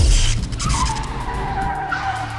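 Cartoon sound effects: a loud hissing burst as a car is struck by a blast, then a long squeal like skidding tyres, starting about half a second in.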